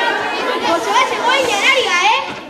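Several children's voices chattering and talking over one another, in a large hall.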